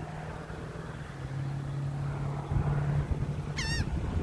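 Steady low hum of vehicle engines or traffic, with low rumble of wind on the microphone. Just before the end comes a short wavering bird call.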